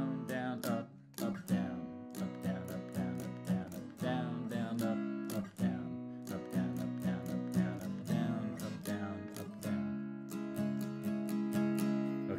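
Acoustic guitar strummed in a quick, syncopated down-and-up pattern, changing between A, C-sharp minor and B chords.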